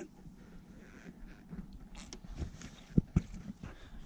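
Rustling and handling noises with two sharp knocks about three seconds in, as a live burbot is laid and held on a fish measuring board on the carpeted floor of a boat.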